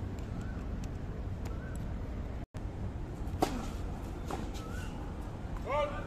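Tennis serve: a racket strikes the ball with one sharp pop about three and a half seconds in, followed about a second later by a fainter hit, over a steady outdoor background hum.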